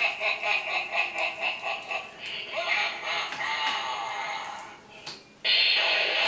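A cackling laugh, a rapid run of about four or five pulses a second for the first two seconds, then a longer wavering, gliding vocal sound; a sudden louder sound starts just before the end.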